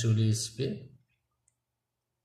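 A man speaking for about the first second, then near silence with one faint tick.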